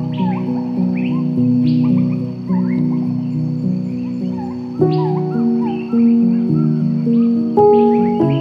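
Slow, soft piano music holding sustained chords, with a new chord struck about five seconds in and again near the end. Birds chirp over it throughout, short rising and falling calls repeated again and again.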